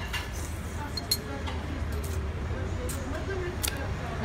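Steady low rumble of buses and street traffic, with a few short clinks of a spoon against a soup bowl, the sharpest about a second in. Quiet voices in the background.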